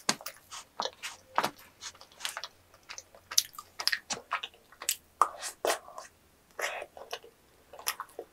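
Close-miked chewing of chewy yakgwa (Korean honey cookie) with ice cream: irregular wet mouth clicks and smacks, several a second.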